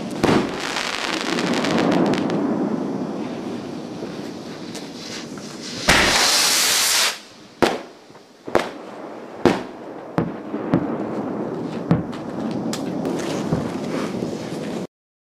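Aerial fireworks bursting overhead: sharp bangs over a continuous crackle. About six seconds in there is a loud rushing burst lasting about a second, followed by a string of separate bangs about a second apart.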